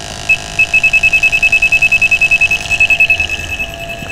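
Handheld CO2 A/C leak detector (ATS BULLSEYE) beeping rapidly in a high electronic tone, at roughly ten or more beeps a second. The probe is picking up CO2 escaping from the leaking low-pressure suction hose at the compressor.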